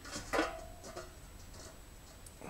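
Small handling clicks of a pin being started into a plastic snowmobile choke lever assembly by hand. The loudest is a short knock about a third of a second in with a brief ringing tone after it, then a softer click around a second in.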